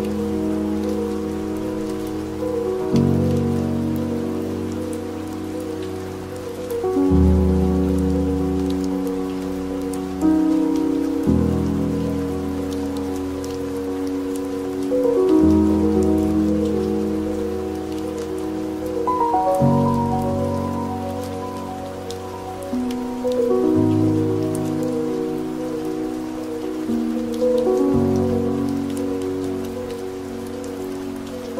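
Slow ambient piano chords, a new chord about every four seconds, each entering and then fading, layered over steady recorded rain with scattered drop ticks.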